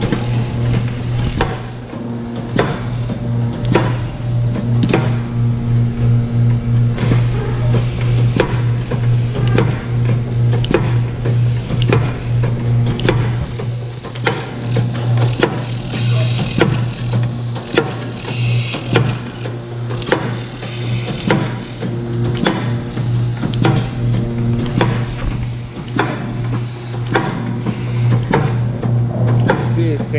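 Pierce PS-10 rotary numbering, slitting and scoring machine running: a steady motor hum under a regular series of sharp clacks, about one a second or a little faster, as sheets feed through its rollers.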